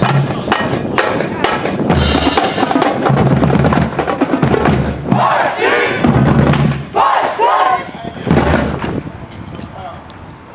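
Marching band drumline playing a cadence, with sharp snare hits over heavy bass-drum beats, while band members shout chants. It fades over the last second or two.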